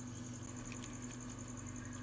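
Quiet room tone: a faint, steady hum with a thin high whine and no distinct sound events.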